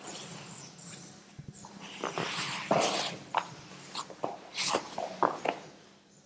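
Scuffing, rustling and soft knocks of grappling on a mat, with short sharp breaths, as a jiu-jitsu takedown is carried through; the loudest knocks come near the middle and toward the end.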